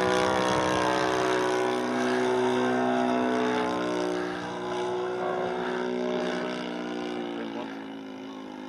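Model P-47 Thunderbolt's internal-combustion engine running in flight, a steady buzzing drone that dips slightly in pitch a second or two in and grows fainter in the second half as the plane draws away.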